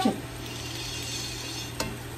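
Shredded cabbage frying in a pot with very little oil and no water: a soft, steady sizzle. A single sharp click near the end, a metal spoon against the pot.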